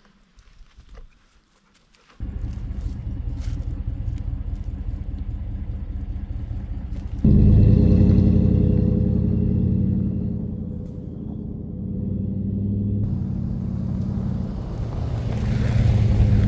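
Ram pickup truck's engine running, its low rumble coming in suddenly about two seconds in and growing much louder about five seconds later, then easing off and rising again near the end.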